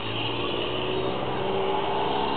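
Steady street traffic: cars driving through the intersection, one engine's note slowly rising as it pulls away.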